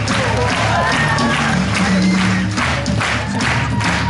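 Live band music: drum kit, electric guitar and bass playing a steady beat, with hand claps on the beat and some wordless singing.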